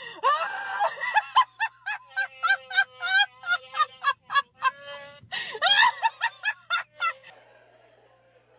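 A woman laughing uncontrollably in quick, high-pitched fits that come several times a second, trailing off about seven seconds in.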